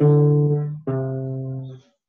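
Classical guitar playing single bass notes, each left to ring: a D, then about a second in a lower C, stepping down the E–D–C bass run of a waltz accompaniment in A minor.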